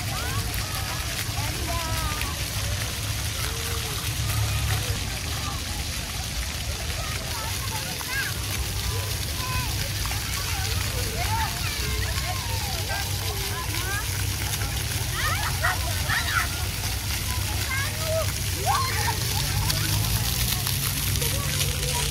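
Ground-level fountain jets of a splash pad spraying and splashing steadily onto wet paving. Many children's voices call and shout over the water throughout.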